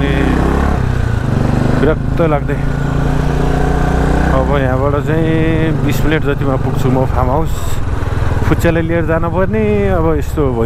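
Motorcycle engine running while riding, heard from the rider's seat, its steady drone shifting pitch a little about a second in and again midway.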